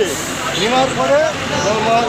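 A man speaking, over steady street traffic noise.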